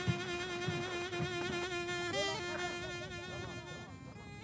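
Film score music: a bowed string instrument holds one long, slightly wavering note that fades toward the end.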